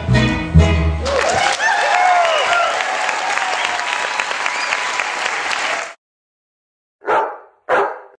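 A fado song on Portuguese guitar and classical guitar ends in the first second. The audience then applauds and cheers for about five seconds, which cuts off suddenly. After a second of silence a dog barks twice.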